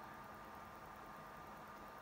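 Near silence: a faint steady hiss with a thin, high, steady hum running under it.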